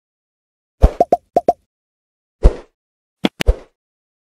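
Sound effects of an animated like-and-subscribe button: a series of sharp pops and mouse clicks in quick groups, starting about a second in.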